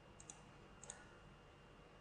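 Two faint computer mouse clicks, about two-thirds of a second apart, over near-silent room tone.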